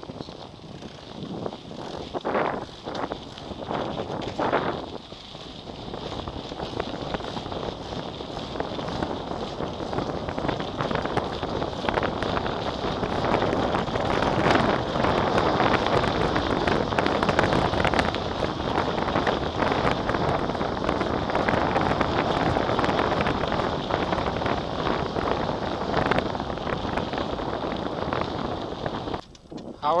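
Wind rushing over the microphone and the rattle and tyre noise of a mountain bike riding along a dirt path, with a few knocks from bumps near the start. The rush grows louder and steadier from about six seconds in as the bike picks up speed.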